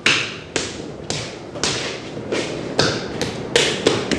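Hands slapping and rubbing over the surface of a large sculpture in repeated strokes, about two a second, each a sharp slap trailing off into a brief rasp.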